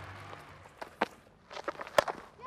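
A few sparse handclaps from the crowd, with a sharp crack of bat on ball at the very end.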